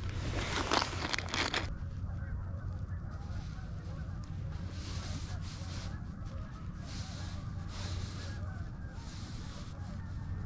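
Plastic bait package crinkling and rustling in the hands for about the first second and a half, then mostly a steady low rumble of wind on the microphone while the soft plastic bait is rigged onto the hook.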